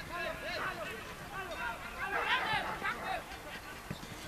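Several people shouting and calling to each other at once across an open football pitch, the calls short and overlapping and too far off to make out, busiest about halfway through.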